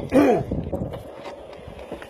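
A man's voice trailing off with a falling pitch in the first half-second, then low background noise with a few faint knocks.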